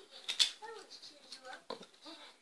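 Faint, indistinct mumbled speech with a short hiss about half a second in.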